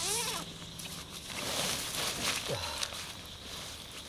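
Nylon tent carry bag being opened and handled: fabric rustling and straps shuffling, with a short falling tone about two and a half seconds in.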